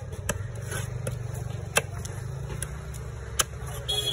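A big fish-cutting knife striking the fish and the wooden chopping block: four sharp knocks at uneven intervals, the loudest a little before halfway and near the end. Under them runs a steady low engine hum from a nearby vehicle.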